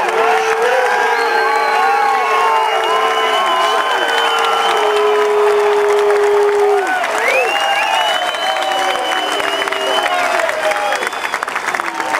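Large grandstand crowd applauding and cheering: steady clapping with many voices yelling over it, some held long. The clapping thins a little near the end.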